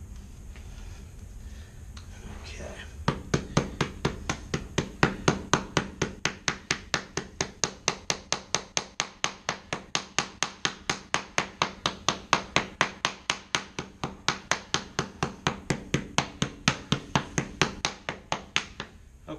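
Mallet tapping a rubber T-molding transition strip down into its track, in a steady run of quick blows, about four a second, starting about three seconds in. Before the blows, hands rub and press the strip.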